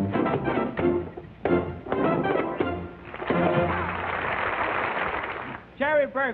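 A dance band with trumpets and trombones plays the closing bars of a lively samba over a pulsing bass. About three seconds in, the music stops and studio audience applause follows for a couple of seconds.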